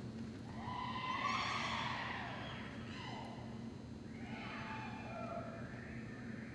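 A horse whinnying twice: a loud call about a second in, and a second, quieter call near the end.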